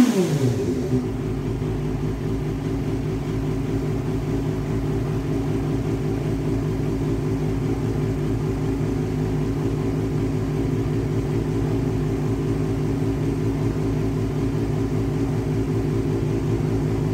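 Yamaha FZR250's inline-four engine with its revs falling back from a throttle blip in the first second, then idling steadily.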